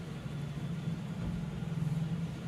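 Steady low background hum of a running motor.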